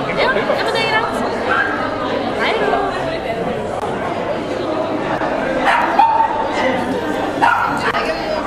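A few short dog barks and yips over the steady chatter of a crowd of people.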